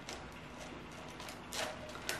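Faint rustling and crackling of hoya roots being pulled and torn free of a mesh pot where they had grown through, with a short crackle about one and a half seconds in and another at the end.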